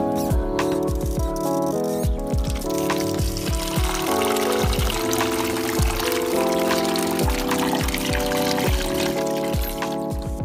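Background music with a steady beat, over water pouring and splashing into a plastic basin as shelled snail meat is rinsed and rubbed by hand with salt. The water sound grows from about two seconds in.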